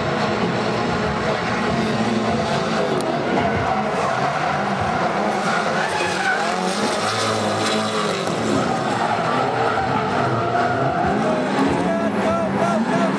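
Drift cars sliding through a corner, with engines revving up and down against a continuous tyre screech from the slide.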